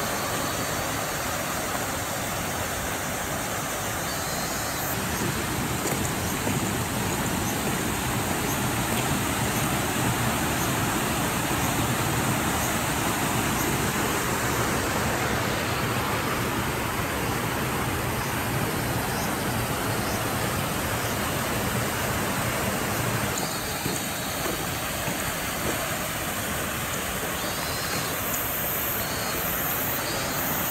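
Muddy floodwater rushing through a washed-out road bed: a steady rushing noise, louder through the middle stretch.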